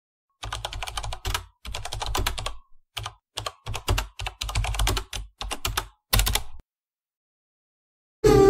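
Computer keyboard typing sound effect: short runs of rapid keystrokes with dead silence between them, stopping well before the end.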